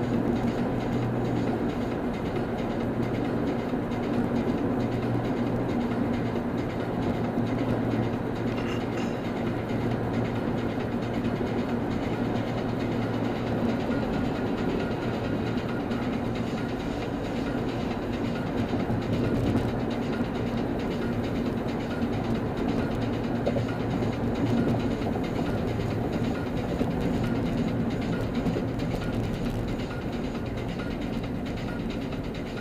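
Steady drone of a car cruising at freeway speed, heard from inside the cabin: tyre and road noise with a constant low engine hum and no change in pace.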